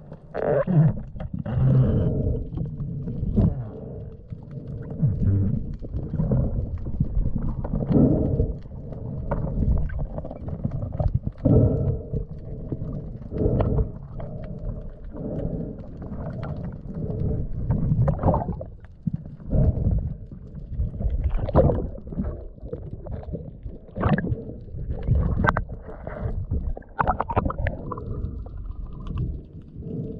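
Underwater sound picked up by a camera in the sea: water surging and sloshing against the housing in irregular low rumbles, with scattered clicks and a faint steady hum beneath.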